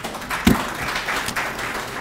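Audience applauding, a dense patter of clapping, with a single thump about half a second in.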